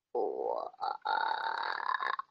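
A child's voice coming over a video-call link, quieter than the surrounding talk and with no clear words, broken twice by short gaps about the first second in.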